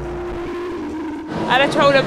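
Live R&B concert sound: a long held note for a little over a second, then a voice with strongly wavering pitch comes in near the end.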